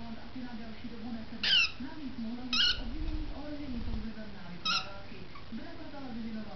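A lovebird giving three short, high chirps: about a second and a half in, again a second later, and once more near five seconds in.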